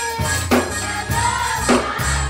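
A gospel choir singing with a live church band, the drums keeping a steady beat a little under twice a second over sustained bass notes.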